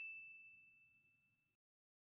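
The fading tail of a single high, bell-like ding sound effect, a pure ringing tone that dies away within about the first second and a half, followed by near silence.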